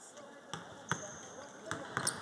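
Basketballs bouncing on an indoor court during team practice: four irregular thuds, with background voices in a large hall.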